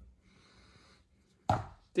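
A faint breathy hiss in the first second, then a single sharp knock about one and a half seconds in.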